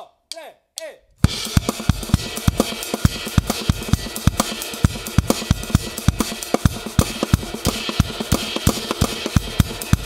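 Full drum kit played fast, starting about a second in: a dense run of snare, bass drum and cymbal strokes. It is a herta-phrased groove carrying the beat from 4/4 into a 6/8 polyrhythm at the same tempo.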